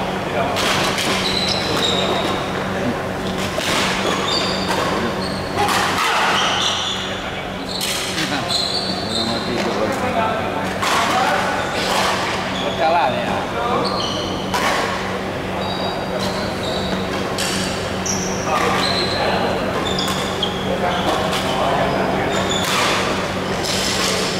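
Badminton rally in a large hall: sharp racket strikes on the shuttlecock every second or two, echoing, with short high squeaks of shoes on the wooden court floor and voices in the background.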